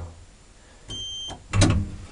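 A short electronic beep from the modernised HVILAN elevator's controls: one steady high tone lasting under half a second, about a second in. A clunk follows shortly after.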